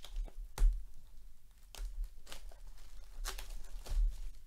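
Plastic shrink wrap on a cardboard trading-card box being slit and torn off, crinkling, with a string of sharp crackles. The loudest crackle comes about half a second in.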